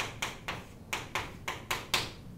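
Chalk writing on a blackboard: a quick run of about eight sharp taps and short strokes.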